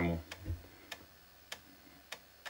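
A low keypress thump, then several faint, sharp clicks at uneven intervals from the laptop's floppy drive as its head steps while the MS-DOS 6.22 setup program loads from the floppy disk.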